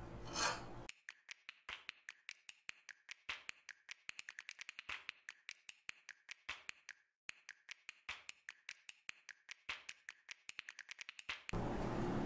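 A long run of small, irregular clicks and scrapes, packed closely together in the middle, from hands working loose the wire connector of a rechargeable battery pack.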